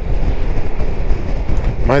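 Wind rushing over the microphone, mixed with the drone of the Zontes 350E scooter's single-cylinder engine and tyre noise, cruising steadily at about 49 km/h.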